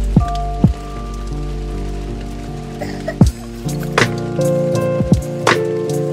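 Lo-fi hip hop beat: sustained jazzy chords over a bass line, with sparse, sharp drum hits.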